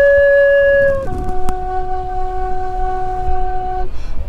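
Wooden end-blown flute playing two long held notes: a higher note for about a second, then a step down to a lower note held for nearly three seconds, over a low rumble.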